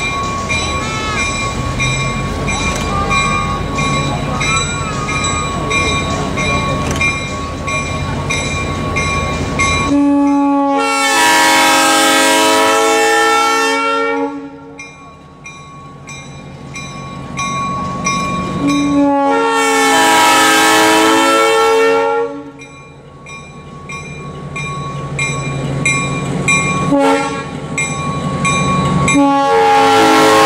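EMD SW8 diesel switcher's air horn sounding the grade-crossing pattern: two long blasts, one short, then a long one starting near the end. Under it a bell rings steadily at about two strokes a second, with the locomotive's diesel engine running as it approaches slowly.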